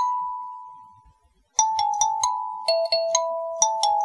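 Background kalimba music. A plucked note rings and fades to a short pause about a second in, then a run of notes resumes, about four a second.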